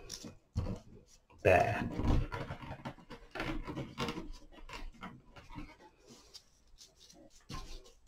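A brief, breathy vocal sound about a second and a half in, then small rustles and clicks of thin wire being twisted by hand around willow stems, fading toward quiet near the end.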